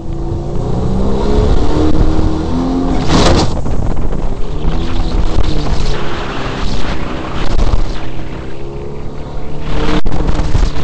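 Jet boat engine running hard as the boat skims shallow river water, its pitch rising and falling with the throttle over the rush of water and wind. A brief loud burst of rushing noise comes about three seconds in.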